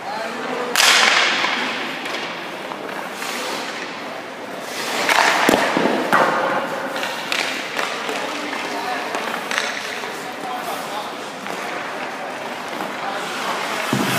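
Hockey goalie's skate blades and leg pads scraping and sliding on rink ice in several hissing bursts as he pushes and drops into butterfly slides, with one sharp knock about five and a half seconds in.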